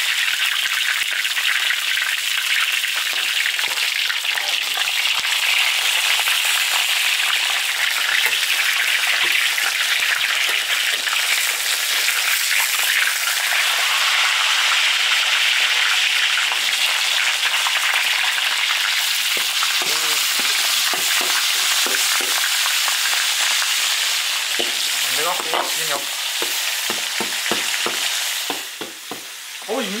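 Fish heads frying in hot oil in a large iron wok, a loud steady sizzle. In the last third, a few knocks and scrapes of a spatula against the wok join in.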